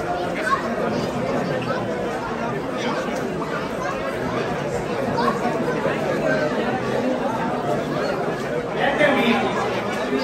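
Crowd chatter: many people talking at once, a steady mix of overlapping voices in a large hall.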